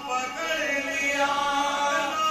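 Men's voices chanting a marsiya, an Urdu elegy, with no instruments: a lead reciter holds long, gliding notes while another voice joins in.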